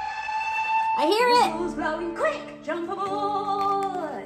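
A children's song: a voice singing over instrumental backing, with a quick rising and falling note about a second in.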